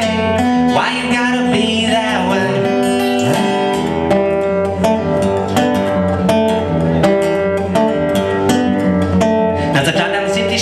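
Acoustic guitar strummed in a steady rhythm, chords ringing between the strokes.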